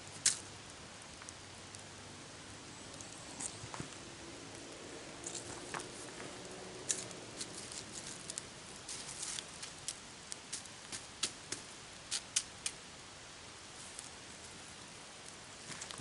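Wood campfire crackling: sharp, irregular pops and snaps over a faint steady hiss, with one louder snap just after the start and a busier run of pops in the middle.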